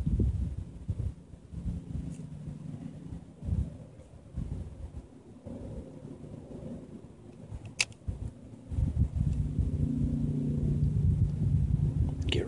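Low, uneven rumble of wind buffeting the microphone, growing stronger near the end, with a single sharp click about eight seconds in.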